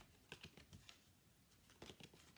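Near silence: room tone with a few faint, scattered light clicks.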